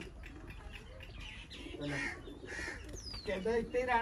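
Domestic pigeons cooing faintly, with a short high falling bird chirp a little after three seconds in.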